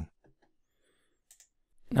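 Near silence with one faint computer mouse click a little past halfway through.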